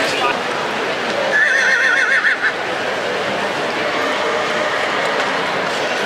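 A horse whinnying once, a high, wavering call about a second long, starting about a second and a half in, over steady crowd chatter.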